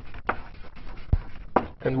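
Chalk knocking and tapping against a blackboard while writing: a few separate sharp taps.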